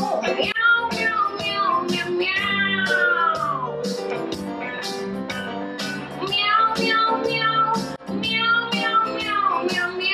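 Live band with drums and guitar backing young singers, who sing long falling, meow-like glides in imitation of cats. The drumbeat runs steadily under the voices.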